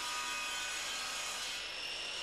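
Circular saw mounted in a Triton Workcentre saw table, running steadily with a thin whine while a piece of wood is fed through it at a bevel.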